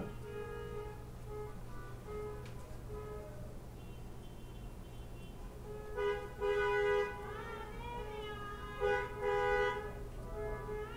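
Car horns honking from passing cars: fainter held honks, then two louder blasts about a second long, near six and nine seconds in, each sounding two close notes at once.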